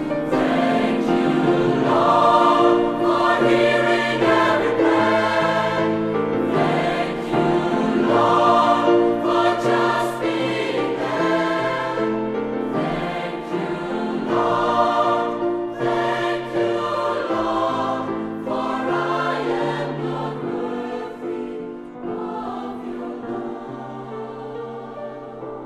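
Mixed choir of women's and men's voices singing sustained chords in concert, growing softer over the last several seconds.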